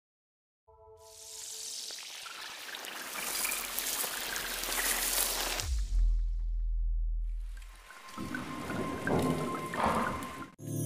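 Intro sound design: a short cluster of tones, then a hissing noise swell that builds for about five seconds. A deep bass hit lands about six seconds in and holds for about two seconds. A second hiss with glittery ticks rises near the end.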